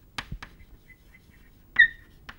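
Chalk writing on a chalkboard: a few sharp taps and scratches of the stick, then a short, high squeak of the chalk near the end.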